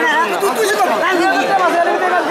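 Loud, steady chatter of many voices talking over one another: the hubbub of a busy wholesale fish market, with no single voice standing out.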